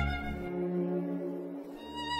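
Orchestral music in a soft passage of bowed strings holding pitched notes. The deep bass drops out about half a second in and comes back near the end.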